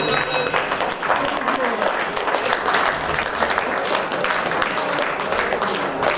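Hall audience applauding and calling out at the end of a boxing bout, with the ringing of the boxing-ring bell dying away in the first half second.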